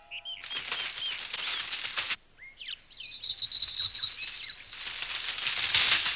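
Cartoon sound effect of an owl's wings flapping in quick fluttering runs, broken by a short pause about two seconds in, with a few brief bird chirps.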